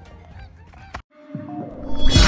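Faint outdoor background sound that cuts off abruptly about a second in. After a brief silence, an editing transition sound effect swells up into loud music.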